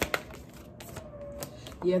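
A deck of tarot cards being shuffled by hand: a quick flurry of sharp card clicks at the start, thinning to scattered taps. A short spoken word near the end.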